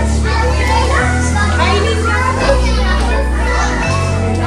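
Background music with sustained bass chords that change about every second and a bit, over young children's voices chattering.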